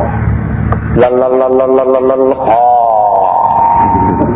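A man's voice intoning in long drawn-out tones: one note held level for more than a second, then a short slide in pitch that settles into a higher held note, as in Buddhist chanting. A low steady hum runs underneath.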